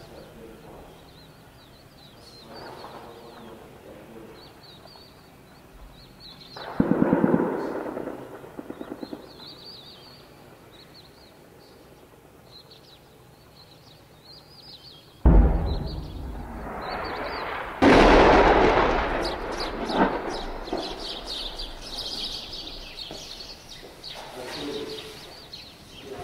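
Gunfire and shelling echoing across a valley: a rapid burst of gunfire about seven seconds in, then two heavy booms from the tanks' bombardment, the first about fifteen seconds in and a louder one near eighteen seconds, each rumbling away over several seconds. Birds chirp throughout.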